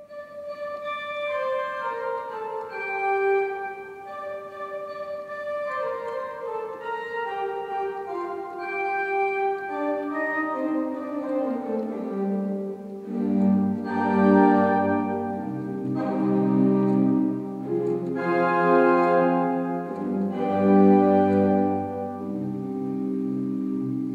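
Pipe organ played from a velocity-sensitive MIDI keyboard, whose stops are set by how fast each key is struck. It plays a slow piece in held notes that step downward, becoming fuller and louder about halfway through as low bass notes come in.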